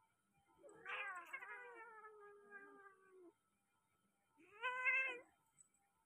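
Turkish Angora cat yowling twice during mating: a long drawn-out call that sinks slightly in pitch, then a shorter call about a second later that rises and holds.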